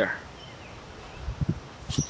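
Handling noise: a few low, dull thumps about one and a half seconds in and a sharp click at the very end, over a steady hiss of background noise.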